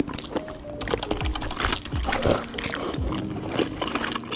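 Close-miked mouth sounds of eating noodles: slurps and wet, clicky chewing. Background music with a repeating low beat plays underneath.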